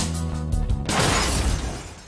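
Music with drums and guitar, cut off about a second in by a sudden car crash with windscreen glass shattering; the crash noise then fades away.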